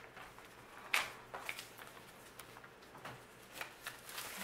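Faint rustling of paper bills being slid into a clear plastic cash envelope, with a few light clicks and taps, the sharpest about a second in.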